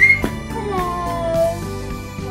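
A wailing cry voiced for a toy monkey: a short high squeal at the start, then a longer wavering cry, over background music.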